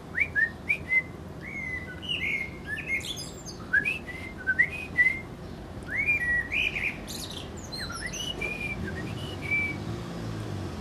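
Male Eurasian blackbird singing short, fluty whistled phrases, with a person whistling notes back at it. The notes come in quick succession, mostly rising and then held, with thin high twittering flourishes about three and seven seconds in.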